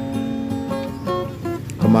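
Background music with acoustic guitar: held and plucked guitar notes.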